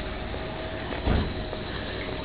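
Steady outdoor background noise, an even hiss with a faint steady hum, broken by a short low rumble about a second in.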